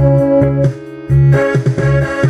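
Karaoke accompaniment music from an electronic backing-track machine: an organ-like keyboard melody over bass, with no lead vocal. The music thins out briefly a little before the middle, then comes back in full.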